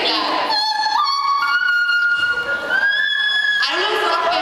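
A voice, amplified through a microphone, sings long, high, wordless notes, stepping up in pitch three times. There are brief spoken words just before and after.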